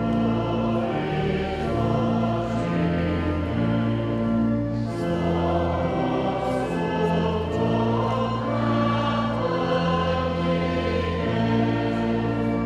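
A congregation singing a slow hymn with church organ accompaniment, in long held notes that change about every second.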